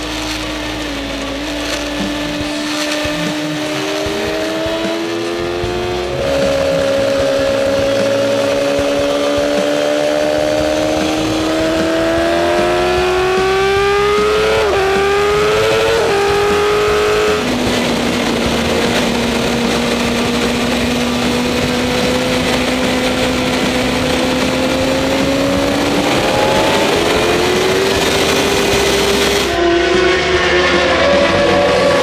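Racing motorcycle engine heard from an onboard camera at full throttle, its note climbing steadily and dropping in steps at upshifts about six seconds in and again about seventeen seconds in, with a waver around fifteen seconds. A heavy rush of wind runs under it.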